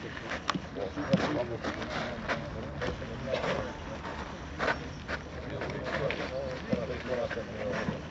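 Several men talking indistinctly among themselves, with a few short sharp clicks scattered through.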